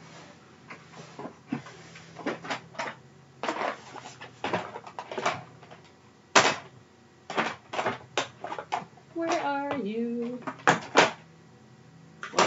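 Craft supplies in plastic packaging rustling and knocking as they are rummaged through: a run of irregular clicks and knocks, the loudest about six seconds in.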